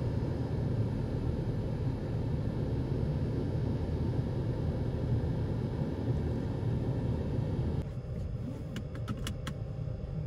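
Car engine idling, a steady low rumble heard from inside the cabin. Near the end it quietens and a few short clicks follow.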